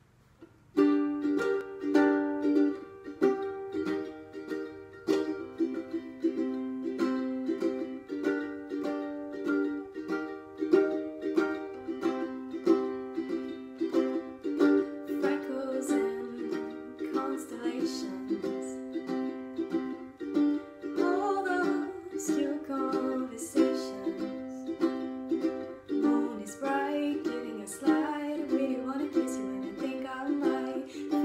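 Acoustic ukulele strummed in a steady rhythm, starting about a second in after near silence. A woman's voice joins in over the ukulele from about halfway through.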